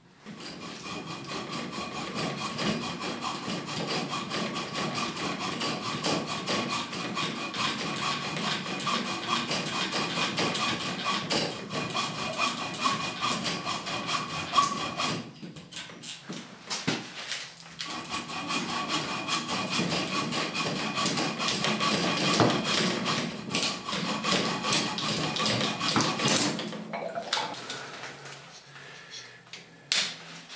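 Hacksaw cutting through a lead water pipe with rapid back-and-forth strokes, in two spells with a pause of about two seconds in the middle, the sawing stopping a few seconds before the end.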